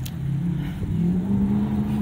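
Car engine speeding up, heard from inside the car: a low hum that rises slowly in pitch and gets a little louder.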